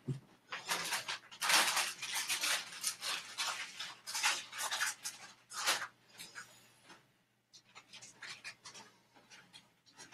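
Irregular rustling and handling noises, loudest through the first six seconds, then fading to a few faint scattered clicks.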